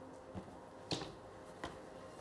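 Quiet room tone broken by three short, faint clicks or taps, the second one, about a second in, the loudest.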